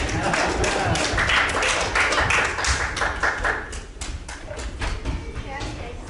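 Congregation applauding: dense clapping for about four seconds, then thinning out to scattered claps and thuds.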